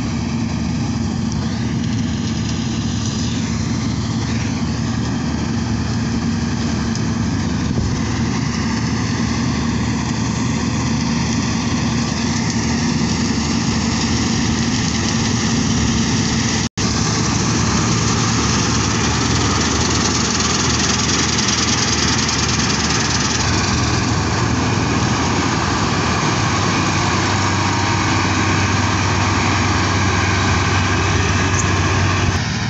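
New Holland combine harvester running steadily as it cuts wheat: diesel engine and threshing machinery humming, getting a little louder as it comes closer. The sound breaks off for an instant just past halfway.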